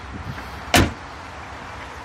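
A door of a 1986 Chevrolet Caprice Brougham shut once with a single solid thud, about three-quarters of a second in, over a low steady background rumble.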